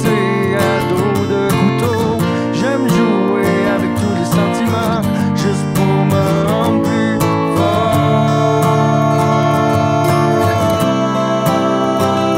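Acoustic guitar music in an instrumental passage: plucked and strummed chords under a wavering lead melody, settling into a long held note about eight seconds in.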